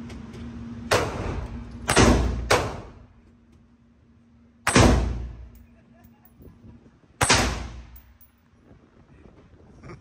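Five handgun shots fired in an indoor range, each trailing off in a short echo; two come about half a second apart near two seconds in, and the loudest is a little before five seconds in.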